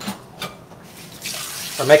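Two light clicks, then a kitchen tap running water steadily into the sink from about a second in.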